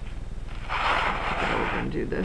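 Plastic wrap crinkling for about a second as it is pressed and smoothed by hand over a clay armature, with a steady low hum underneath.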